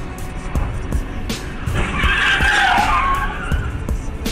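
Car tyres squealing in a skid, a wavering screech that starts about two seconds in and lasts about a second and a half, over background music with a steady beat.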